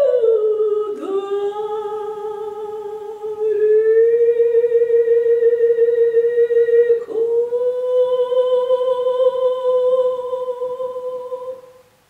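A woman's trained operatic voice singing unaccompanied in long held notes with vibrato. It slides down at the start, steps up twice, and ends on a long final note that fades away near the end.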